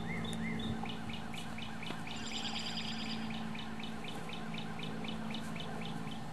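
Songbirds singing: a long run of short rising-and-falling chirps repeated about three times a second, with a buzzy trill about two seconds in. A steady low hum runs underneath.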